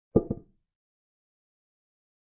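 Chess software's piece-capture sound effect: two quick wooden clicks about a sixth of a second apart, with nothing after them.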